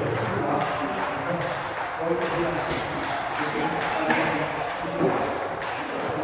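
Table tennis ball being hit back and forth in a doubles rally: a series of sharp clicks of the celluloid ball off the bats and table, with voices in the hall behind.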